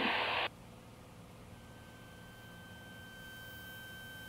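A short burst of radio static that cuts off sharply, then the faint hiss of the aircraft radio and intercom feed, with a faint steady whine coming in about a second and a half in.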